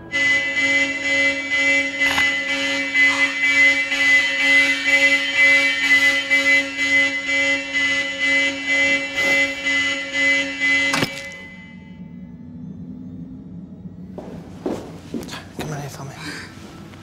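A loud, steady electronic alarm tone sounds from the start, with a voice rising and falling over it, and stops abruptly with a click about eleven seconds in. A few knocks follow near the end.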